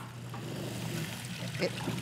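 Tap water running steadily from a kitchen faucet onto a silicone sponge being rinsed in a stainless steel sink.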